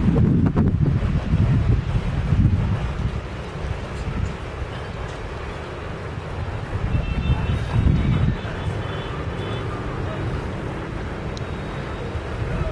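Wind buffeting the microphone: a gusting low rumble, strongest in the first second and again near the middle, with faint voices in the background.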